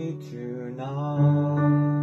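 An electronic keyboard plays held chords in a piano ballad, with a man's voice holding a sustained sung note over it.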